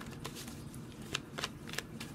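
Tarot cards being handled: a few light, separate clicks and snaps of card stock, about five in two seconds.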